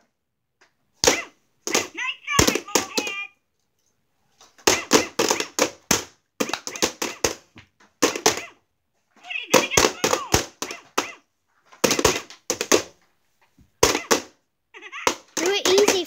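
Plastic mallets tapping the light-up mole buttons of a toy whack-a-mole game, in quick clusters of sharp knocks, with children's voices in between.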